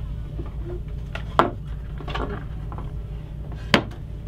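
Wooden parts of an upright piano knocking and rubbing as its keyboard section is closed up to turn it into a bed: two sharp knocks, about a second and a half in and again near the end, with softer handling between, over a steady low hum.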